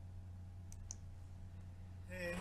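A quiet gap between voices: a low steady hum, with two faint clicks just under a second in.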